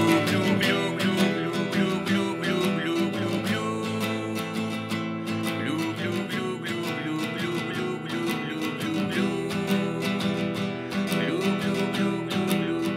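Instrumental song passage led by a strummed nylon-string Spanish guitar (guitarra criolla), coming in suddenly at full level at the start, with steady rhythmic strokes over sustained notes.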